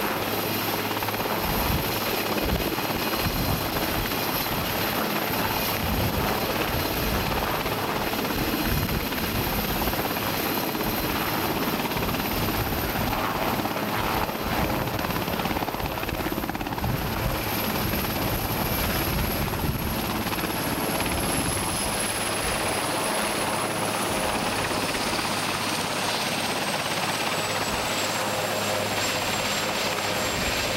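Marine One, a Sikorsky VH-3D Sea King helicopter, running on the ground with steady rotor and turbine noise. Over the last third its high turbine whine falls steadily in pitch as the engines wind down.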